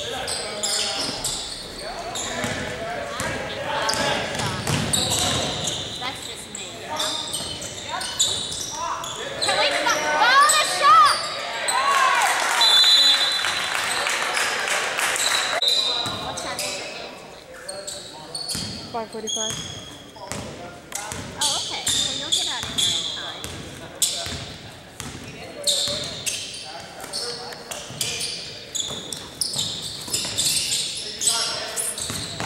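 Basketball game in a gym: a ball bouncing on the hardwood floor, with indistinct voices from players and spectators, all echoing in the large hall. It is busiest and loudest from about ten to fifteen seconds in, then settles to a run of single sharp bounces as the ball is dribbled up the court.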